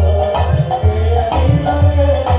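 Bengali kirtan ensemble playing: a khol drum beating repeated deep strokes, kartal hand cymbals jingling, and harmonium and violin holding a sustained melody line.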